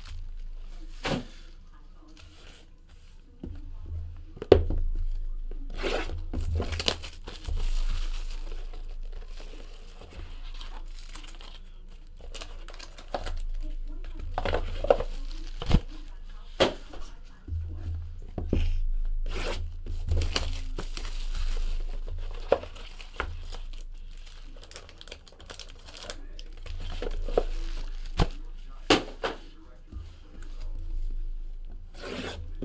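Cellophane shrink-wrap being torn and crumpled off trading-card boxes, with plastic crinkling and cardboard and foil packs being handled. Irregular crackles throughout, with a few sharper knocks on the table.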